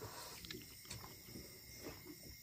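Faint steady chirring of insects, likely crickets, with a few soft ticks from hands eating off steel plates.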